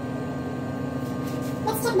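Steady electrical hum with a few faint high steady tones running underneath, and a brief bit of speech near the end.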